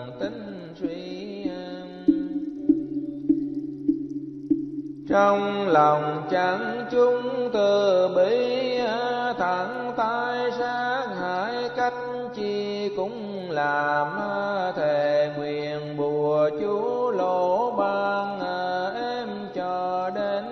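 Buddhist devotional music: a melody of sliding, wavering notes over a steady low drone. The first few seconds hold long sustained notes, and the fuller melody comes in about five seconds in.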